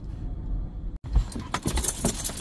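Low, steady rumble of a minivan rolling slowly, then after an abrupt break about a second in, a quick burst of metallic jangling and rattling clicks.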